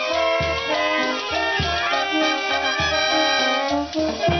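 A street wind band playing a cumbia: saxophones and brass carry the melody over a bass drum beating about twice a second.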